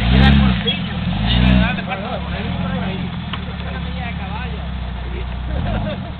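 Engine of an off-road Jeep Cherokee revved twice in short bursts, each rising and falling in pitch, then running steadily at a low idle.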